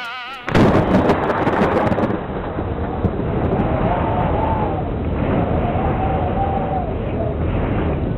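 Thunder: a sudden loud crack about half a second in, then a long, dense rolling rumble that holds steady.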